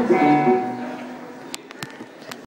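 Acoustic guitar notes ringing out and fading over about a second. A few sharp clicks follow near the end.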